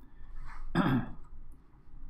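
A man briefly clears his throat once, just under a second in, after a short breath.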